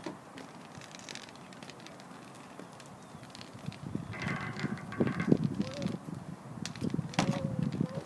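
Footsteps on a paved parking lot, heard as scattered sharp clicks, with uneven low rumbling bursts, like wind on the microphone, from about halfway through.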